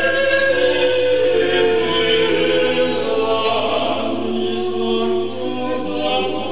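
Male vocal quartet singing a Renaissance polyphonic motet a cappella, a male soprano on the top part, with several voices holding and moving between sustained notes at once.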